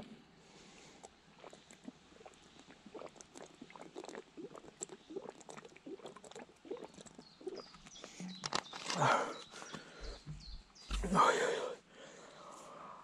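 Faint scattered clicks and rustles, then two short, louder breaths from a person near the end, with a couple of low thumps between them.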